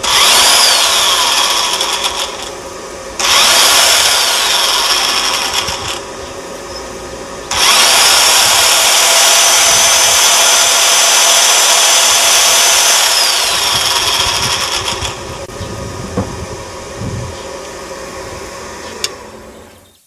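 Corded electric drill with a hole saw bit, powered through a 12 V inverter, run three times: about three seconds, about three seconds, then about seven seconds. Its motor whine rises as it spins up and falls as it winds down, a sign that the drill runs normally on inverter power. Between runs the inverter's cooling fan, which is very noisy, keeps going steadily, and there is a click near the end.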